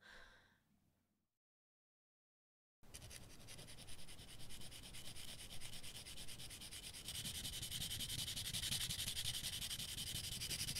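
A sound dies away, then there is dead silence for about a second and a half. A steady, dry rasping rub then starts abruptly, with a fast even flutter to it, and it grows brighter and louder about seven seconds in.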